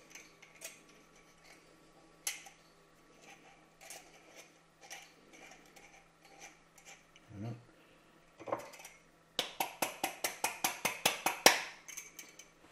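Small glass jar handled with light clicks, then tapped rapidly, about eight knocks a second for some two seconds near the end, to knock the loose flour out after lining it with butter and flour.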